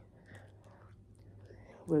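Faint breathy sounds of a person drawing on a cigarette and blowing out the smoke, over a low steady hum.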